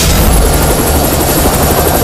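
Helicopter running, its rotor beating rapidly over a steady high turbine whine.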